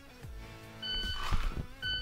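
Shot timer beeping twice, one second apart: a start beep, then the par-time beep at a one-second par for a dry-fire draw from the holster. Each beep is a short, high electronic tone.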